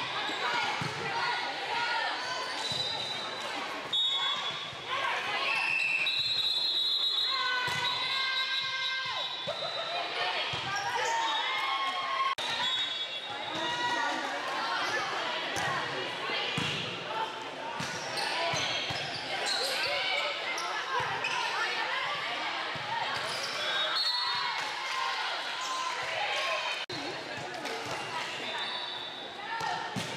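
A volleyball being served and struck during rallies in a large gym, the hits echoing around the hall. Players and spectators call out and chatter throughout.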